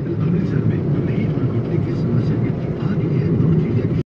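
Steady road and engine rumble of a moving car, heard from inside the cabin.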